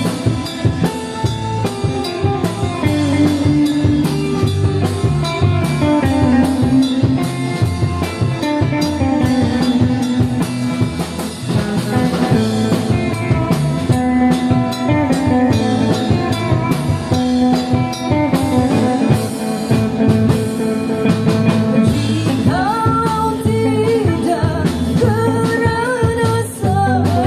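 A live band playing an instrumental passage on electric guitars and drum kit, with a steady beat and a sustained melody line. A singer's voice comes back in near the end.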